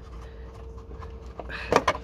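Plastic indicator bulb holder being twisted and pulled out of the back of the van's headlamp unit: quiet fumbling, then a quick cluster of sharp plastic clicks near the end.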